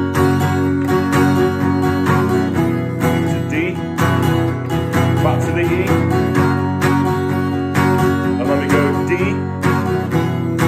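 Steel-string acoustic guitar, capoed at the second fret, strummed steadily at about two strokes a second through a progression of E- and D-shape chords.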